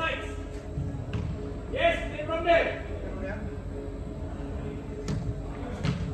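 Football players shouting calls to each other in a large indoor hall, with two sharp knocks of a ball being kicked, about a second in and again about five seconds in.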